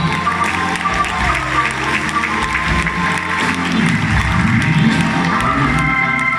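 Live blues band playing, with electric guitar and keyboard, while the audience applauds over the music.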